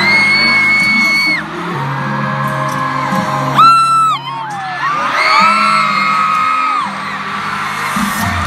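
Live pop song playing over a stadium sound system, with fans near the phone screaming in long, high held notes. The loudest scream comes about three and a half seconds in and lasts about half a second.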